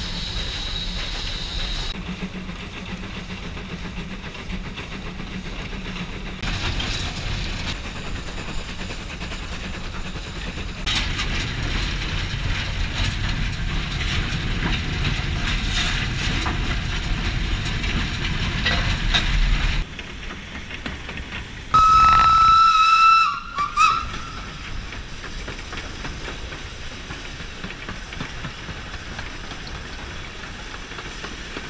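Ivatt Class 2MT steam locomotive running, heard from the footplate: a steady rumble and hiss of the engine and wheels on the rails. About two-thirds of the way through, its whistle gives one blast of under two seconds, with a short toot just after.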